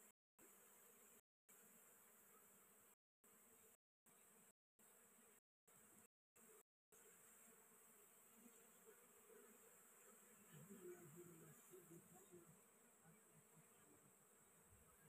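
Faint buzzing of honey bees crowding a small open comb on a branch, with faint wavering hums from bees flying close. In the first half the sound drops out completely several times for a split second.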